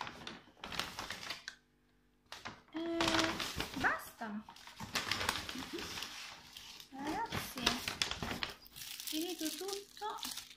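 A brown paper shopping bag rustling and crinkling as it is handled and rummaged through, with a short pause about two seconds in. Brief wordless vocal sounds come in between.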